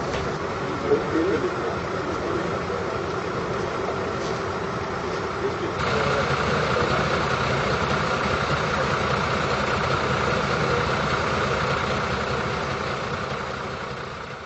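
Fire engine's diesel engine idling steadily, with a few faint voices in the first couple of seconds. The engine gets louder about six seconds in and starts fading out near the end.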